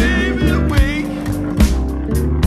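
Rollicking gospel-funk band instrumental: a pedal steel guitar plays sliding, bending phrases over a steady bass line, with a drum hit about every 0.8 seconds.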